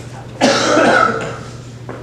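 A person coughs once, loudly, about half a second in, lasting under a second.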